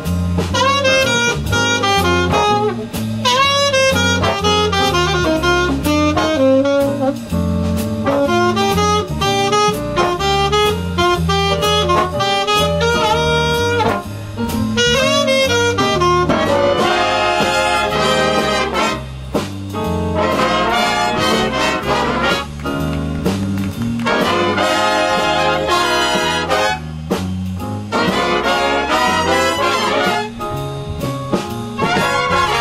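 Live jazz big band playing an instrumental chorus: a saxophone solo over a walking bass and rhythm section, then from about halfway the full brass section comes in with loud punched chords.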